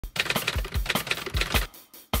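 A fast, uneven run of sharp clicks like typing, with low thuds under some of the strokes; it dies away shortly before the end.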